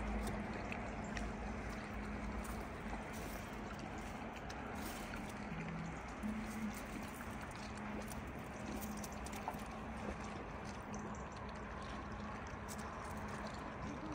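Quiet lakeside outdoor ambience: a steady low hush with a faint hum that comes and goes and a few light clicks.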